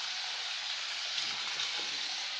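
Toothbrush bristles scrubbing against teeth: a steady, even hissing scratch.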